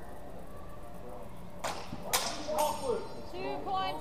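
Two quick swishes of a long weapon cut through the air about half a second apart, with voices starting just after.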